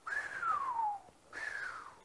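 A person whistling two falling notes: a long one sliding down in pitch, then a shorter one that dips only a little.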